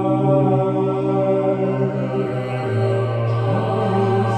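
A cappella vocal group singing sustained close-harmony chords without words. A low bass voice under the chords steps down to a lower note a little under three seconds in.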